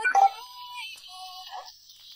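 A short, electronic-sounding musical sting of a few high held notes, the first one bright and sudden at the start, the last ones ending about a second and a half in.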